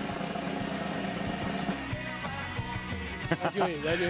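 Background music of steady held tones, a suspense-style music bed, with voices coming in near the end.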